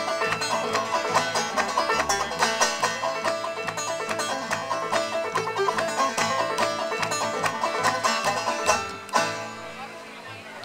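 Clawhammer banjo and upright bass playing an old-time instrumental break. A little past nine seconds in the tune closes on a final struck note that rings out and fades.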